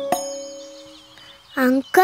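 A single chime-like note of the background music is struck and rings out, fading away over about a second and a half. Near the end a young girl begins speaking.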